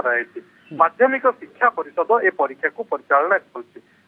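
A man talking over a telephone line, with a short pause about half a second in.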